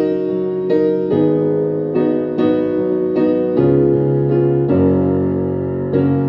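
Solo digital piano playing a slow gospel chord progression, both hands, with a new chord struck roughly every half second and each left ringing into the next.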